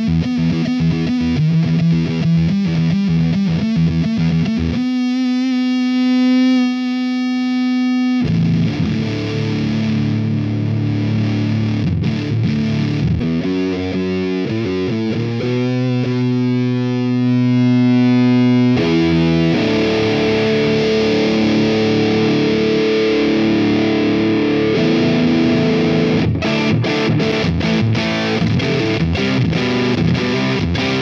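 Squier Stratocaster electric guitar played through a Kernom Moho analog fuzz pedal: heavily fuzzed riffs and held notes. The tone changes several times as the pedal's knobs are turned, with a thin, high buzzing stretch about five seconds in and a fuller, thicker fuzz from about two-thirds of the way through.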